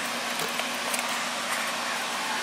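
Steady blowing hiss with a faint low hum from the garage's furnace running, with a couple of faint clicks about half a second in and near one and a half seconds.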